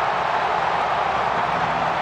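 Stadium crowd cheering a goal: a steady, unbroken wall of noise.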